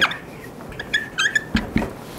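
Felt-tip marker squeaking on a whiteboard as a word is written: short squeaky strokes about a second in, then two quick taps of the tip near the end.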